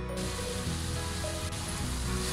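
Steady frying sizzle from shredded pork shoulder and a tomato-potato sofrito in a hot frying pan, cutting in just after the start, under background music.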